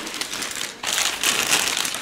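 Clear plastic bag crinkling and rustling as hands unwrap and handle the keyboard's parts, growing louder a little under a second in.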